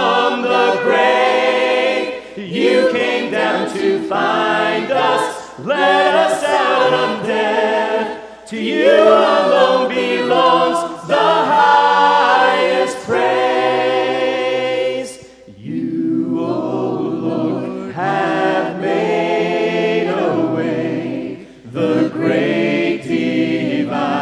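A mixed group of men's and women's voices singing a worship song a cappella in harmony, with no instruments, in phrases with short breaks between them.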